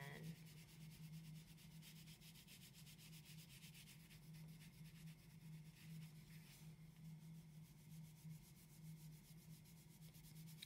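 Wax crayon rubbing across paper in quick, repeated strokes going the same direction, faint, as a shirt is coloured in green.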